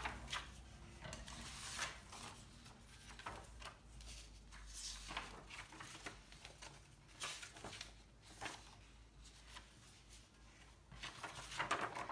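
Folded sheets of printed paper being handled and slid into one another on a wooden tabletop: faint, scattered rustles and soft slides every second or two.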